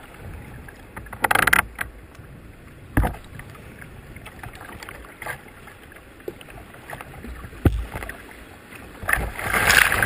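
Choppy river rapids rushing and slapping against a kayak's bow, heard from a camera on the deck, with a few sharp slaps on the hull. Near the end a big splash builds as a wave breaks over the bow.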